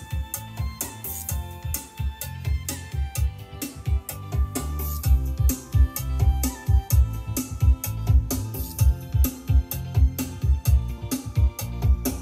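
Recorded music with a steady beat and heavy bass, played back through a pair of Bose 701 Series II floor-standing speakers, whose deep bass is being demonstrated.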